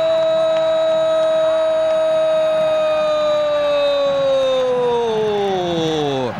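A football commentator's long drawn-out goal cry, "gooool", held loud on one steady note for several seconds, then sliding down in pitch near the end.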